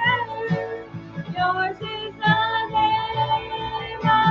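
A woman singing along to a recorded backing track, her voice moving in long held notes over the accompaniment.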